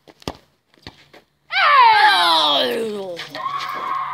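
A football struck in a free kick, a single sharp thud, with a fainter knock under a second later. Then comes a loud, long shout that falls steadily in pitch, the players reacting to the shot being saved, and a shorter held cry near the end.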